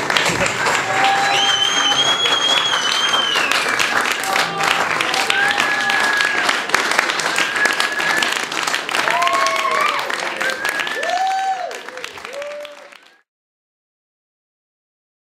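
Audience applauding, with cheering voices and a long, high whistle. The applause fades and cuts off just before the end.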